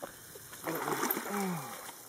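Water splashing as a large Murray cod thrashes in the shallows while held by hand, with a man's wordless, drawn-out call falling in pitch over it.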